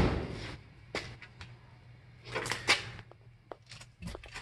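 A dull thump, then scattered light knocks and clicks: handling noise against the body and door opening of an old car as someone leans in.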